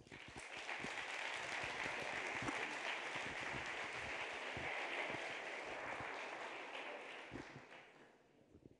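Audience applauding in a large auditorium: the clapping swells quickly, holds steady, and dies away near the end.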